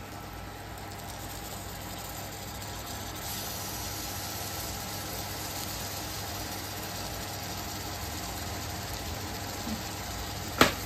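Fresh squid pieces cooking in hot masala in an aluminium pan on a gas burner: a steady sizzling hiss over a low hum. The hiss grows louder about three seconds in as the squid starts to release its water.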